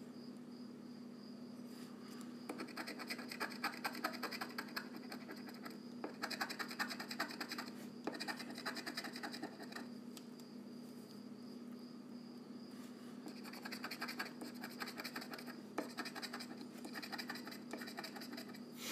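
An instant lottery scratch-off ticket being scratched, its coating scraped off in several spells of quick rapid strokes separated by short pauses.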